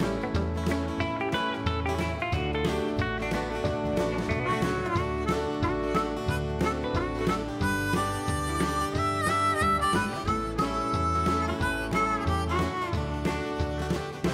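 Live country band playing an instrumental break: a harmonica solo with bending notes over acoustic and electric guitars, bass and drums keeping a steady beat.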